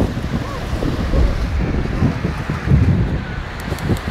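Wind buffeting the microphone over small waves breaking and washing up a sandy beach.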